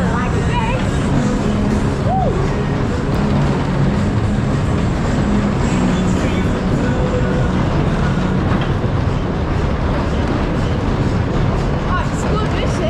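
Benson's Speedway, a 1930-built vintage fairground speedway ride, running at speed: a loud, steady rush and rumble from the spinning ride, with fairground music underneath and a brief rider's shout about two seconds in.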